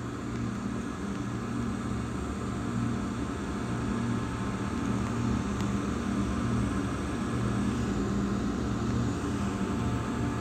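A steady low mechanical hum, a little louder from about three seconds in.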